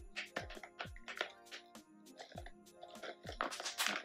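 Crackling and crinkling of a clear plastic package of small ball ornaments as hands work at a package that is hard to open, in short irregular bursts, over background music with a steady beat.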